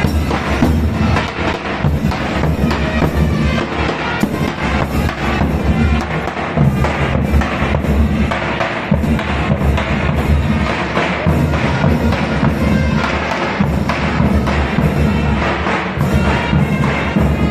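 Ottoman mehter band playing a march: davul bass drum beats and clashing zil cymbals in a steady rhythm, with a shrill wind melody above.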